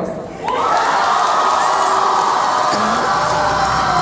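Auditorium audience cheering and whooping, coming up suddenly about half a second in and then holding steady and loud.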